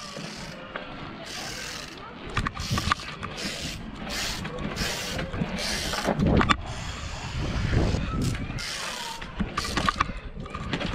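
Mountain bike ridden over asphalt and kerbs, heard from a body-mounted camera: tyre rolling noise and wind rushing on the microphone, with a few sharp knocks from the bike's hops and landings.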